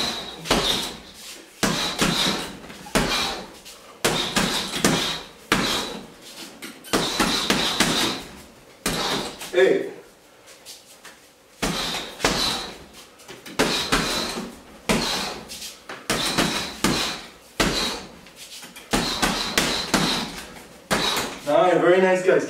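Gloved punches and elbow strikes landing on a hanging heavy bag: rapid combinations of heavy thuds in bursts of several hits, with short pauses between the bursts. A brief grunt comes about ten seconds in.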